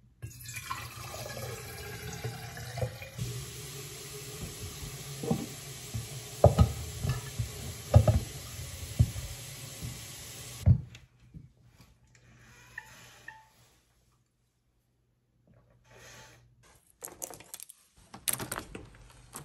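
Water poured from a plastic filter pitcher into a stainless steel water bottle for about three seconds. Then a run of sharp knocks and clicks as the bottle and its plastic lid are handled and set on the counter.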